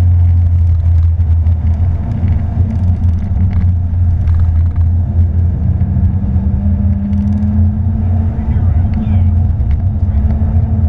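Porsche 911 GT3's flat-six engine and tyre/road noise heard from inside the cabin at speed on track: a loud, steady low drone, with a higher engine tone rising slightly about six seconds in as the car pulls onto the straight.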